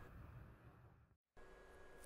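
Near silence: faint room-tone hiss, dropping out completely for a moment just past the middle at an edit.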